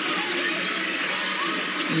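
Basketball being dribbled on a hardwood court during live play, over a steady murmur of arena crowd noise.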